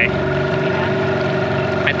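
Yamaha 15 hp outboard motor running steadily, pushing a dinghy along.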